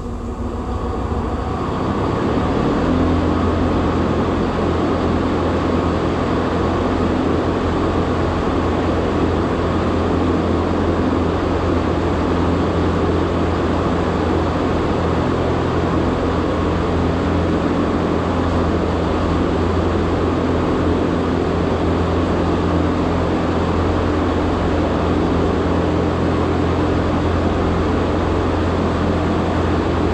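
A large motor-driven machine spins up over the first couple of seconds and then runs steadily and loudly, with a deep hum under a broad mechanical noise.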